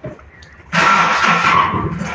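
A Honda Civic's starter cranks the engine: a sudden loud burst with a steady whine in it, starting about three quarters of a second in and easing off near the end. The owner takes the battery to be low.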